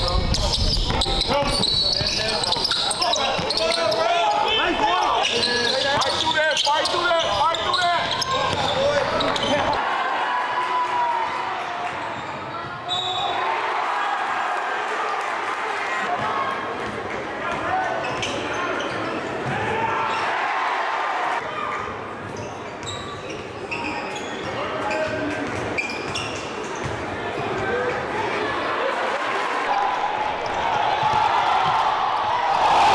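Basketball game audio in a gym: a ball dribbling on a hardwood court among the echoing voices of players and spectators. The deep rumble under it drops away about ten seconds in.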